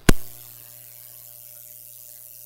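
A single sharp click just after the start, then steady faint hiss with a low electrical hum.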